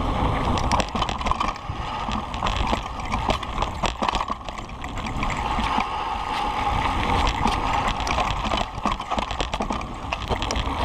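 Kona Process 134 mountain bike riding down a dry dirt trail: a steady rumble of tyres on dirt and wind on the microphone, with many small knocks and rattles from the bike as it rolls over rough ground.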